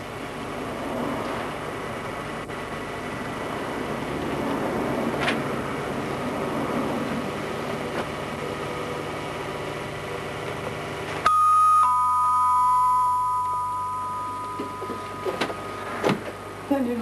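Two-tone ding-dong door chime about eleven seconds in: a higher note, then a lower note about half a second later, both ringing on and slowly fading over a few seconds. It sounds as a visitor comes through the door. Before it there is only steady background noise.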